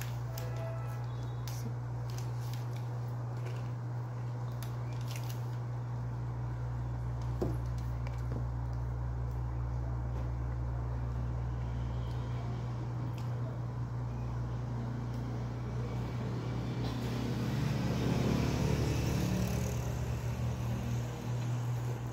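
A steady low hum, with a few light clicks near the start and a louder stretch of muffled background noise a few seconds before the end.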